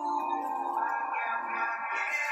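Background music of long, sustained, held notes.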